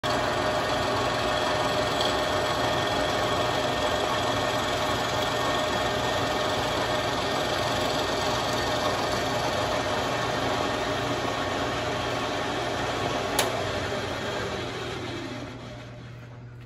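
Bridgeport manual vertical milling machine running with a steady hum and whine. About 13 seconds in comes a sharp click, after which the machine runs down and fades.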